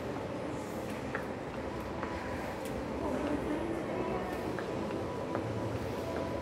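Faint, indistinct voices over a steady indoor background hum, with scattered light clicks of footsteps on a hard floor.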